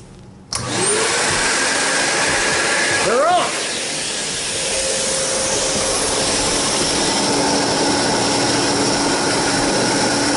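Hoover Constellation canister vacuum motors switched on about half a second in, whining up to speed, with a louder swell and another rise and fall in pitch around three seconds in, then running steadily.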